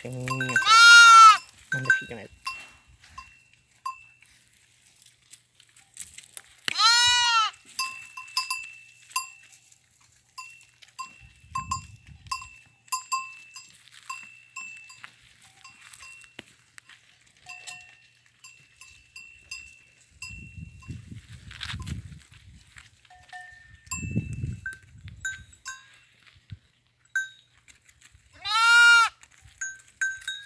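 Goats bleating in three loud calls, about a second in, about seven seconds in and near the end. Between the calls a livestock bell clinks on and off.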